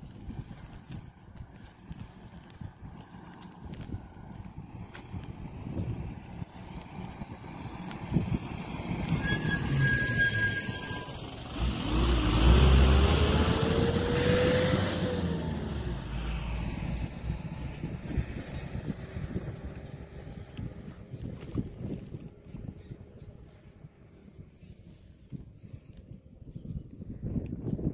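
A motor vehicle drives past on the road, the loudest sound, its engine note rising and then falling as it goes by, about halfway through. Just before it a brief high steady tone sounds, and low rumbling noise fills the rest.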